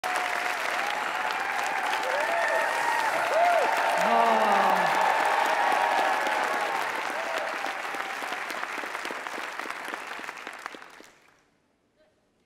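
Studio audience applauding, with cheering voices rising and falling over the clapping. The applause fades away and stops about eleven seconds in.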